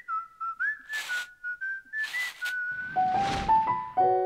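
A short whistled jingle: a single clear melody line, some notes sliding up into the next, with two brief swishes. Near the end the tune drops lower and steps upward under a swelling whoosh.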